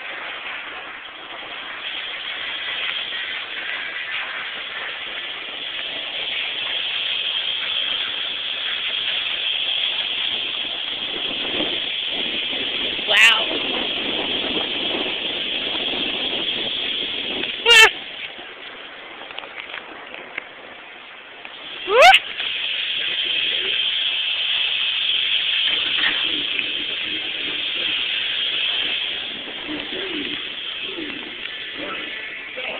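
Three loud screams, about four seconds apart, in the middle of a parachute drop ride, the last one rising in pitch, over a steady background of voices.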